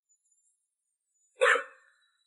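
A man's single short cough, sudden and loud, about one and a half seconds in, from a man coming down with a viral cold.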